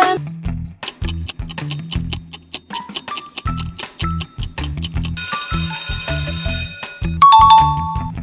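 Quiz countdown-timer music: a fast ticking clock, about four ticks a second, over a low bass pattern. About five seconds in, a sustained high ringing lasts about two seconds, then a short chime sounds near the end.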